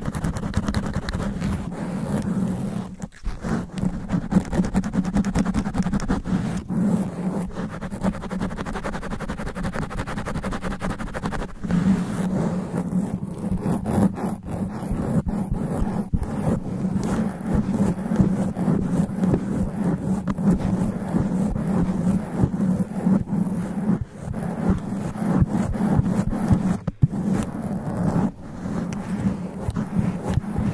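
Long fingernails scratching fast and hard on a foam sponge cover over a condenser microphone, a dense, continuous rasping with a heavy low rumble from the handling. It breaks off briefly about three seconds in and again near the end.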